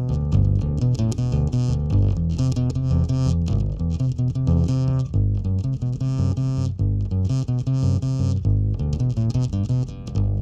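Custom MG electric upright bass played pizzicato with the fingers: a busy line of plucked notes, several a second, recorded straight from the line output of a Hartke 5500 bass amplifier.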